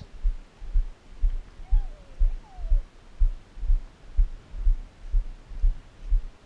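Footsteps on a wooden boardwalk, heard as dull low thuds at a steady walking pace of about two a second.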